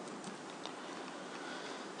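Low steady hiss with a few faint, scattered clicks from the computer being worked.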